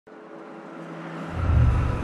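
Car engine sound effect swelling in, growing steadily louder, with a deep rumble coming in just past halfway.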